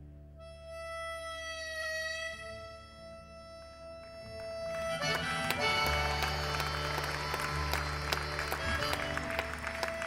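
Harmonica playing a long held note, with a little bend near two seconds in. About five seconds in, strummed acoustic guitar joins it. This is the start of a solo acoustic song's instrumental intro.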